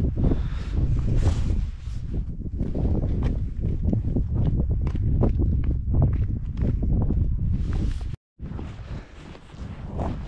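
Wind buffeting the microphone in a steady low rumble, with footsteps on a rough, rocky hill path. The sound drops out for a moment a little after eight seconds in.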